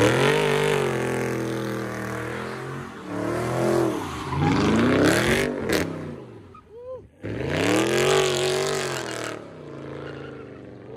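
A Dodge Charger's engine is revved hard while the car spins donuts, with its tyres squealing and smoking on the pavement. The revs rise and fall several times, cutting out briefly around seven seconds in before a final long rev.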